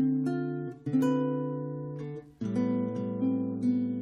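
Background music on acoustic guitar: strummed chords, each left to ring and fade, with a new chord about a second in and another a little past halfway.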